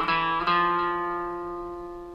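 Single notes picked on an Epiphone electric guitar: one note at the start, then a second about half a second in that rings on and slowly fades.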